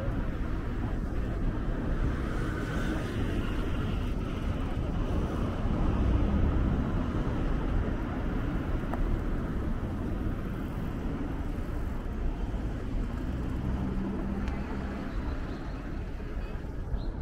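City street traffic: cars running along the road and through an intersection, a steady low rumble.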